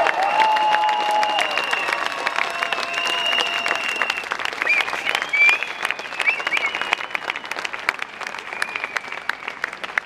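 Crowd applauding, the clapping growing fainter over the last few seconds.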